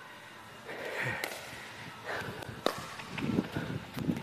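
Pickleball paddles striking a hard plastic pickleball in a rally: two sharp pocks about a second and a half apart, with faint background noise between them.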